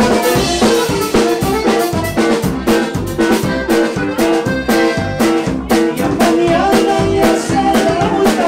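Live Tejano conjunto music: a button accordion playing the melody over a steady drum-kit beat.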